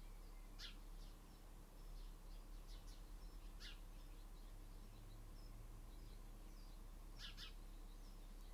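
Faint birds chirping outdoors: a handful of brief high calls scattered through, over a low steady hum.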